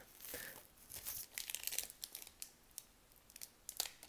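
Foil hockey card pack wrapper being torn open and crinkled by hand: faint tearing and crackling, with a sharper crackle near the end.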